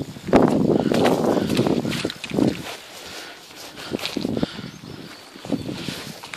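Footsteps walking on a bare earth bank, with rustling and handling noise from the moving camera, loudest in the first two seconds and then lighter, scattered steps.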